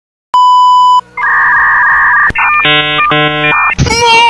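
Bars-and-tone test signal: a steady single-pitch beep with the TV colour bars, about two-thirds of a second long, then a louder two-note electronic beep of about a second and a quick run of buzzy electronic tones, like a glitch transition effect. A man's shouting voice breaks in just before the end.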